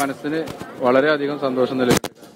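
A person's voice talking in drawn-out phrases with short pauses.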